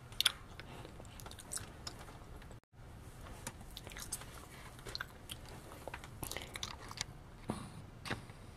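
Faint, scattered small clicks, taps and rustles of a doll and its miniature plastic props being handled and set on a shelf, with two sharper taps near the start. The sound drops out briefly about two and a half seconds in.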